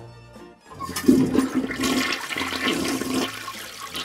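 A toilet flushing: a rush of water that starts about a second in and slowly tapers off.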